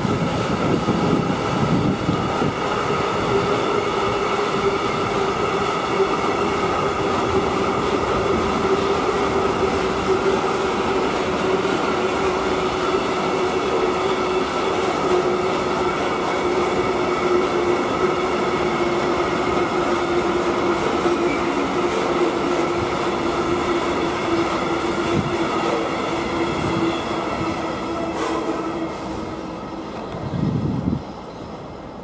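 A freight train's covered hopper wagons rolling past at speed: steady wheel-on-rail noise with a sustained whine that drifts slightly lower in pitch, and a few clicks of wheels over rail joints. The noise eases off near the end as the last wagons go by.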